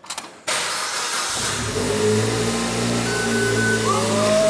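Suzuki Swift Sport engine started by push button: it cranks and catches about half a second in with a burst of noise, then settles into a steady idle with a low hum, through a mild aftermarket exhaust.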